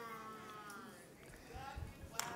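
A faint, drawn-out vocal sound from someone other than the preacher, sliding down in pitch, then a few low thumps near the end.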